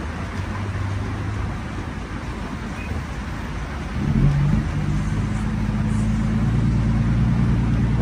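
Scania truck engine heard from inside the cab, running with a steady low hum, then swelling to a louder, fuller engine note about four seconds in as it is put under throttle.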